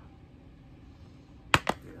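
Two sharp plastic clicks about a second and a half in, close together, from a Blu-ray case being handled.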